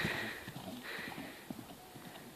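A pony's hoofbeats on grass, a few faint thuds that grow quieter as it moves away.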